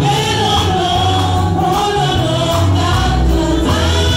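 A small gospel choir singing together into microphones over amplified band accompaniment with a strong bass line.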